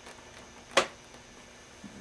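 A single sharp click about three-quarters of a second in, over quiet room tone, as the leather saddle string is worked by hand.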